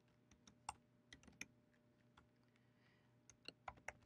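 Faint typing on a computer keyboard: a few scattered keystrokes in the first second and a half, then a quicker run of them near the end.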